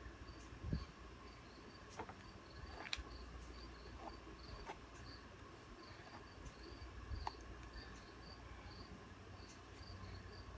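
A cricket chirping faintly and steadily, about two to three short high chirps a second, with a few faint clicks and a soft low thump from handling.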